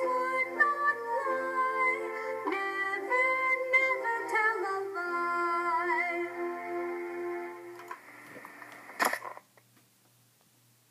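A short song about the letter I sound: a voice singing held notes over music, changing pitch step by step and fading out about eight seconds in. A single sharp knock follows about nine seconds in.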